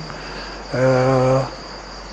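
Crickets trilling, a thin steady high note, with a man's single drawn-out hesitation sound ("eeh") near the middle of the pause.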